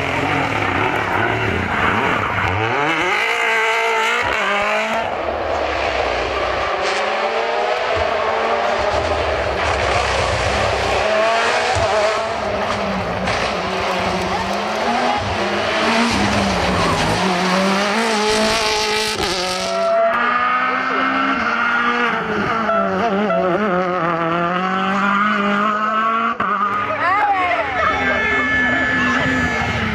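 Rally cars, Mini WRCs among them, driven hard through corners on a tarmac stage: engines rising and falling in pitch through gear changes and lifts, with some tyre squeal, in several separate passes joined by abrupt cuts about 5 and 20 seconds in.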